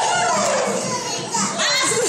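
Young children's voices laughing and calling out, with one long falling vocal slide in the first second, over a children's action song playing faintly in the background.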